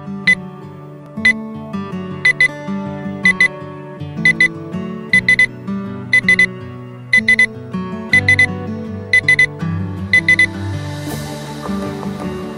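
Digital alarm clock beeping its alarm about once a second, the beeps growing from single to double to quick groups of three or four, over background music. The beeping stops near the end, giving way to a brief rising whoosh.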